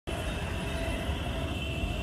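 Steady low rumble with a faint, steady high-pitched whine above it, without any break.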